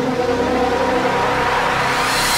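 Synthesized intro sound design: a layered drone of steady tones under a hissing noise that grows brighter and louder toward the end, a build-up riser.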